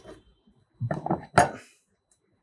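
A flat building-material panel set down on top of a wooden test box. A few light knocks come about a second in, then one sharper, louder clink with a brief ring.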